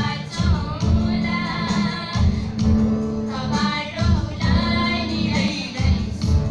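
Two women singing a song together into microphones, accompanied by an acoustic guitar.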